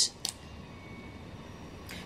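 Quiet room tone with a single brief click soon after the start, then a short breath just before the end.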